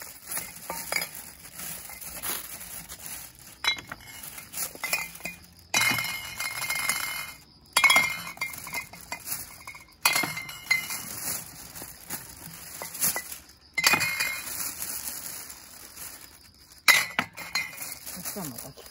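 Glass bottles clinking against one another as they are set one at a time into a plastic crate, with several sharp, loud clinks among lighter taps. Between them a plastic shopping bag rustles as the bottles are pulled out of it.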